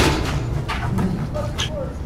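A basketball hits the backboard with one loud, sharp bang at the start, followed by a few lighter knocks of the ball bouncing on the court, with faint voices in the background.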